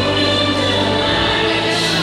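A class of schoolchildren singing together in chorus, with musical accompaniment and held notes.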